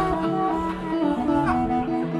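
Blues guitar played solo through a PA: an instrumental passage of picked notes over a lower bass line.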